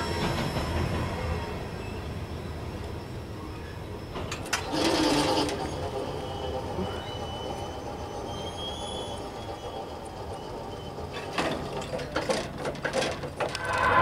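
Freight train's wheel and rail noise dying away as its last car clears a grade crossing, with the crossing's warning bell ringing on while the gates are down and going up. A run of sharp knocks comes near the end.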